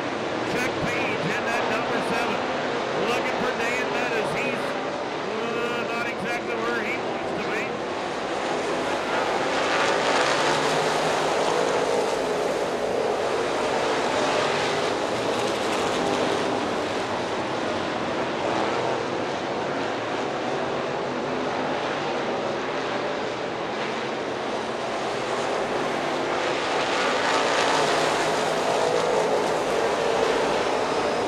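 A pack of Econo Bomber dirt-track race cars running at racing speed under green. The engines swell and ease as the field comes around the track past the stands.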